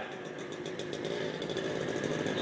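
A steady engine running in the background, growing slightly louder.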